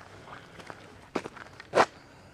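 Footsteps on a gravel and dirt road: faint scuffs, then two distinct steps about a second in and near the end, the second the louder.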